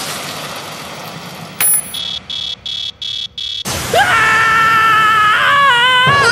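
Anime sound effects: the tail of a drink splashing over a computer keyboard, then a sharp electronic buzz repeating in several short pulses as the computer shorts out, then a high-pitched animated girl's voice screaming.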